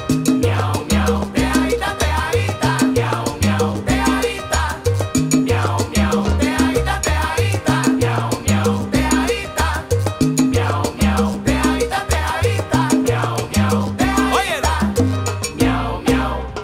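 Salsa band playing an instrumental passage with no vocals: a stepping bass line under congas, timbales and other hand percussion, with piano and marimba.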